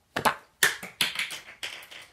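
Plastic cap of a small toiletry container being worked open by hand: a quick series of taps, clicks and scrapes.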